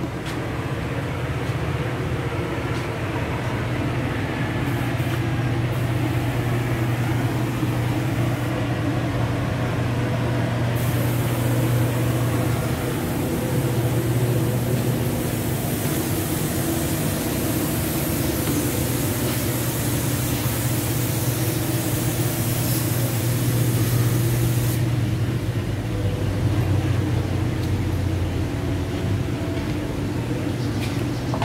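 A steady low mechanical hum with several constant pitches under a noisy wash, as from a running motor. A brighter hiss joins it for the middle stretch.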